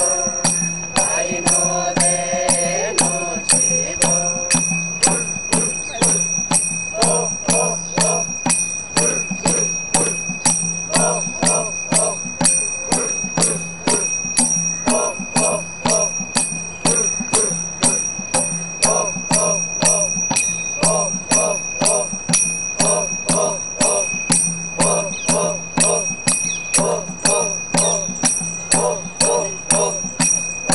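Miji tribal folk song: men and women chant a repeating tune over a ringing metal percussion instrument struck in a steady beat about twice a second.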